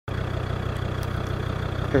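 A 4x4's engine running steadily at low revs.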